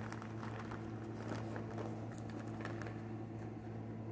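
Paper disposable Kirby vacuum bag rustling and crinkling in scattered light crackles as it is handled and opened out, over a steady low hum.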